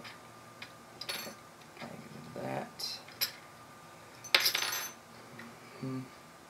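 Small metal parts and a soldering iron being handled on a table: a few light clinks, then a louder metallic clatter that rings for about half a second, about four and a half seconds in.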